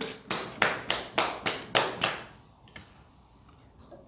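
A quick run of about seven sharp hand slaps, roughly three a second, stopping about two seconds in.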